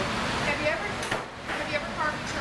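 Indistinct talking over a steady rushing background noise, with a brief light knock about a second in.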